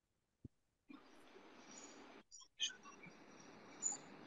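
Faint hiss from a participant's open microphone on an online call, with a single click about half a second in and a few faint blips later; no voice comes through.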